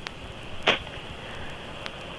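Pause in a recorded telephone voicemail: steady line hiss with a narrow, muffled sound, and a brief soft noise about two-thirds of a second in and a faint click near the end.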